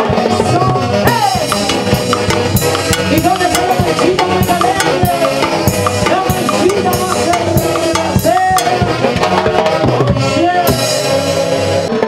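Live Andean fiesta band music: a saxophone-led brass band playing a lively melody, with timbales and drums keeping a steady beat.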